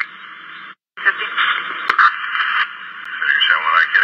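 Police two-way radio traffic: narrow, hissy channel noise, a dead gap just under a second in, then a voice transmission over the radio.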